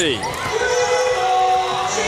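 Basketball game sound in an arena: a ball bouncing on the hardwood court, with a sustained voice-like sound held on one pitch for over a second.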